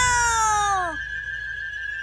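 A high, pitch-shifted voice drawing out the 'no' of 'oh no' in one long cry falling in pitch. It ends about a second in, leaving only a faint steady background tone.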